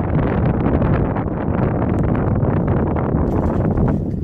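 Wind buffeting the microphone: a loud, steady rumble.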